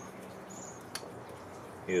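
A single light click about a second in as a small plastic object is picked up off a table, over quiet room tone with a faint short high chirp.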